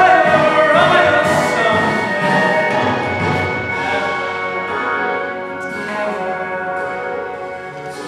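A boy's solo voice sings a showtune over an orchestral accompaniment, belting a held note that falls away about two seconds in. The accompaniment then carries on alone, gradually getting softer.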